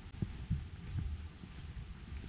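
A walker's footsteps on a woodland footpath, low muffled thuds at an easy walking pace of about two a second, with faint bird chirps high above.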